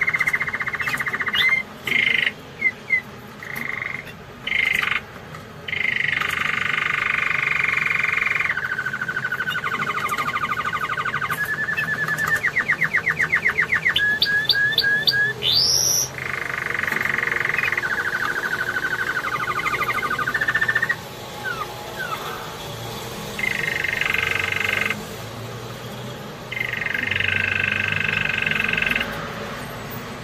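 Domestic canary singing: long phrases of rapid trills and rolls, broken by short pauses, with a run of evenly repeated notes and a fast upward sweep about halfway through.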